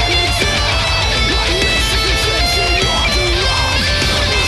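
Schecter electric guitar played along to a metal song: fast picked lines high on the neck over a dense full-band backing with a steady low rhythm.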